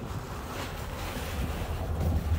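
Low, uneven rumble and rustle of a phone's microphone being handled and moved about, with a brief rustle about half a second in.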